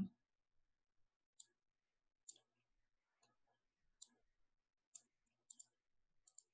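Near silence broken by six faint, sparse clicks, the sound of computer input while code is edited.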